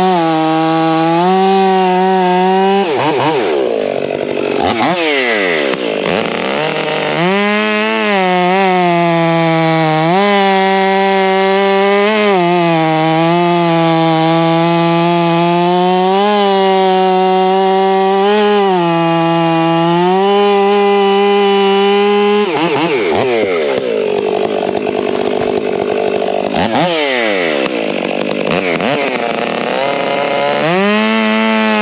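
Two-stroke STIHL chainsaw cutting through a red oak log, its engine held at high revs under load with small rises in pitch as the chain works through the wood. Twice, a few seconds in and again past the middle, the revs drop and sweep back up before it settles into the cut again.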